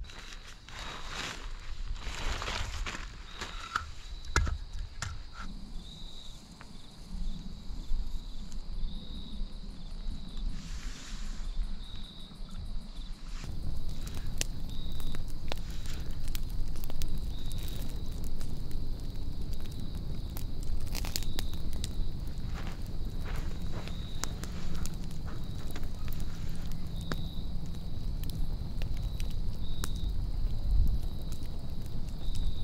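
A small wood campfire being laid and lit on gravel: firewood and a plastic bag handled, then the fire crackling with scattered sharp pops.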